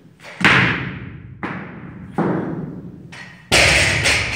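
Loaded barbell dropped onto the lifting platform: a loud impact about half a second in, then lighter bounces, and another loud impact near the end, each ringing on in an echoing room.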